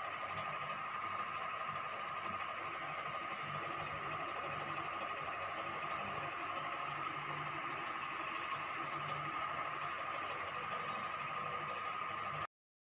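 Steady background noise: an even hiss with a constant high hum running through it, and no distinct events.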